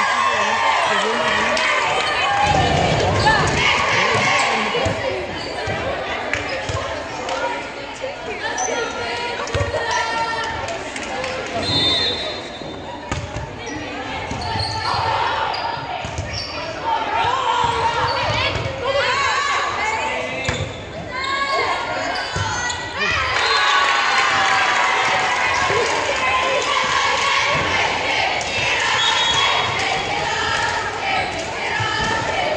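Volleyball being played in an echoing gymnasium: the ball thuds on hands and bounces on the hardwood floor, among players' calls and spectators' chatter.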